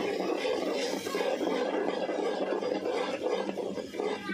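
Metal spoon stirring a thick, cooking mixture in an aluminium pot, scraping and rattling against the pot in a steady crackly stream.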